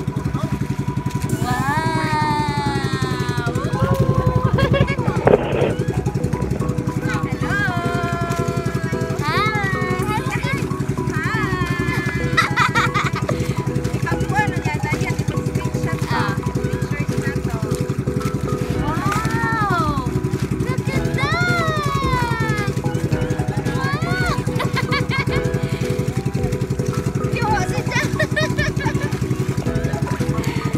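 Outrigger boat's engine running steadily under way, with voices rising and falling over it.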